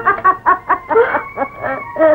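A quick, irregular run of short high clucking cackles, several a second, each rising and falling in pitch like a hen's cackle.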